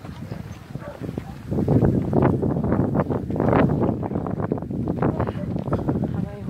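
Footsteps crunching on a gravel road, getting louder about a second and a half in, with people talking in the background.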